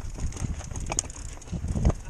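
Mountain bike rolling over slickrock: scattered clicks and rattles from the bike, with low wind rumble on the microphone that grows stronger near the end.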